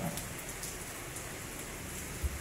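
Steady hiss of rain on a sheet-metal roof, with faint scattered drop ticks.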